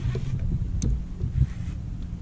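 Low rumble of wind on the microphone, with one short sharp click just under a second in.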